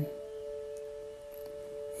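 Soft background meditation music: two steady sustained tones held together as a drone, without a beat.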